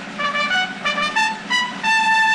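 Brass fanfare led by trumpets, starting suddenly: a run of short notes over a sustained low chord, moving into a long held note near the end. It is stage incidental music marking a scene change in a radio-style recording of the play.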